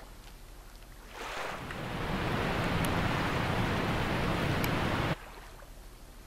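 Rushing water, a river or waterfall sound effect, swelling in about a second in, holding steady for about three seconds, then cutting off abruptly. A faint low hum runs underneath.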